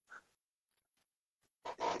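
A pause in a man's talk: near silence with one faint, short mouth sound just after the start, then he draws a breath and begins speaking near the end.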